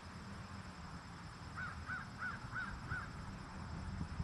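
A bird calling a quick series of five short, harsh notes, starting about a second and a half in.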